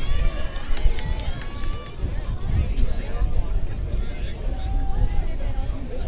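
Scattered voices of players and spectators calling out and chattering at a youth baseball game, distant and overlapping, with no clear words.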